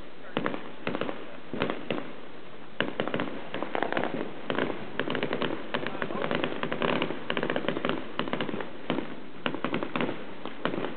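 Many fireworks going off at once: an irregular barrage of sharp bangs and rapid crackling, thickest from about four to eight seconds in.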